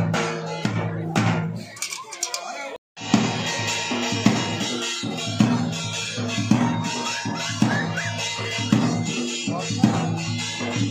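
Rajasthani wedding folk music: a singing voice over a steady drum beat and sustained instrument tones. The sound cuts out completely for a moment about three seconds in.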